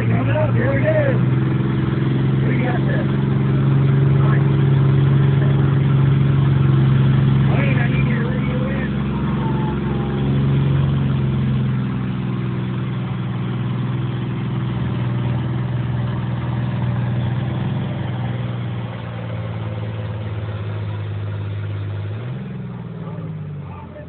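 Massey Ferguson 1135 tractor's six-cylinder diesel engine running hard under load as it pulls a weight sled, a steady drone that grows fainter after about twelve seconds. Near the end an engine briefly revs up.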